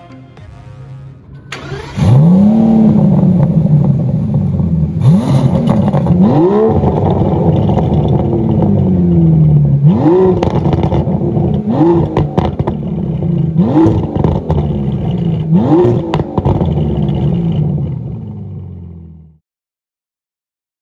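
Aston Martin DBS Superleggera's twin-turbo V12 starting about two seconds in, with a flare of revs that settles into idle. It is then blipped six times, each rev rising sharply and falling back to idle. The sound fades out near the end.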